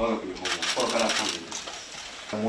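Rapid bursts of camera shutter clicks from press photographers, over a man's voice.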